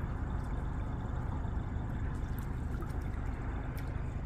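Water sloshing and lapping around a small boat's hull, a steady low rumble under it, with a few faint ticks.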